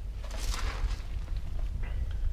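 Handling noise from a hand-held camera being moved: a brief rustle about half a second in over a steady low rumble.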